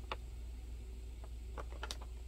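Faint handling sounds of a boxed Funko Pop, a cardboard box with a plastic window: a few light clicks and taps as it is held up and turned in the hands, over a steady low hum.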